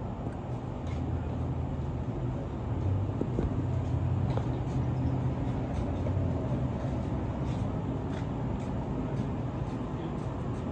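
Amtrak San Joaquin passenger train standing at the platform, giving off a steady low idling hum that swells slightly about three seconds in, with faint light ticks now and then.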